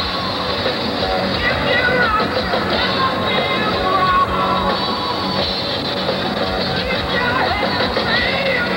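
Hard rock band playing live, a male lead singer belting over drums and guitar, his voice strained by a cold. The sound is dull and cut off at the top, like an old TV recording.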